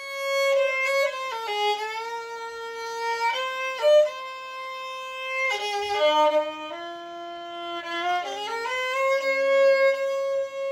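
A single violin playing a slow Hindi film-song melody with the bow, one note at a time: long held notes joined by short slides in pitch.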